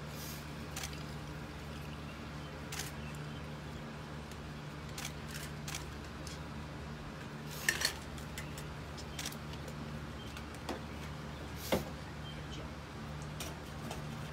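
Scattered light clinks and taps of a metal mixing tin, strainer and glassware as a cocktail is strained, with the sharpest pair about eight seconds in, over a steady low hum.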